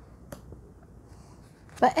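Tarot cards handled on a tabletop: one sharp, brief click about a third of a second in as a card is picked from the spread. A woman starts speaking near the end.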